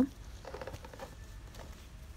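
Faint rustling and handling noise from artificial silk flowers being moved about on the display, over quiet shop room tone.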